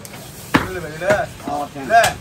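Heavy butcher's cleaver chopping beef on a wooden tree-stump block: two sharp chops, about half a second in and again at the very end.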